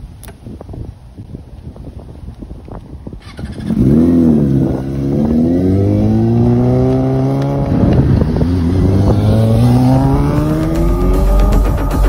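Sport motorcycle engine accelerating hard: after a few seconds of faint clicks and rustling, the engine note comes in loud and climbs in pitch, drops at an upshift about eight seconds in, then climbs again.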